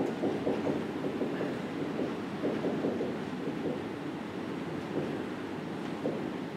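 Dry-erase marker writing on a whiteboard: a quick, irregular run of short strokes as a line of words is written.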